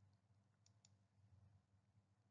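Near silence: a faint low hum, with two faint short ticks a little under a second in.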